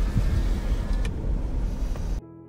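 Low, steady rumble of a car heard from inside its cabin while it waits in a queue, with one sharp click about a second in.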